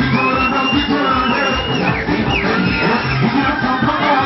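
Loud live stage music with a steady beat over a PA, with crowd noise mixed in.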